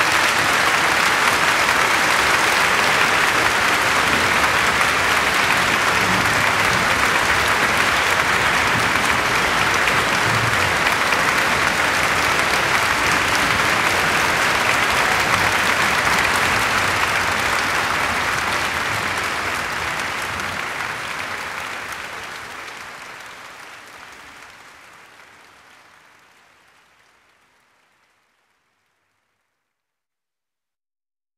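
Concert hall audience applauding steadily at the end of a live orchestral performance. The applause fades out gradually over the last ten seconds or so.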